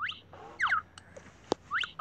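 Cartoon sound effects from a children's story app: a few quick whistle-like slides in pitch, rising and falling, with a sharp click about one and a half seconds in.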